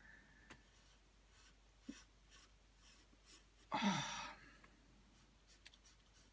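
A graphite pencil shading on paper, with soft scratchy strokes repeating two or three times a second. About four seconds in comes a short, louder breathy exhale.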